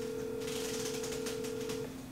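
Telephone ringback tone of an outgoing call, one steady ring about two seconds long, heard through a phone's speaker.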